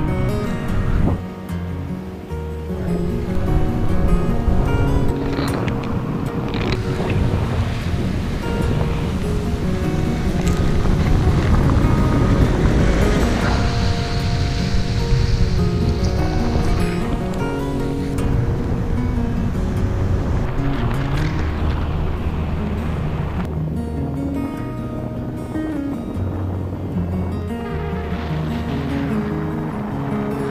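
Fingerstyle acoustic guitar music playing steadily, over a rushing of wind on the microphone in flight that swells in the middle.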